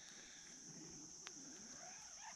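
Near silence: faint outdoor ambience with a steady high-pitched drone and a single faint click about a second and a quarter in.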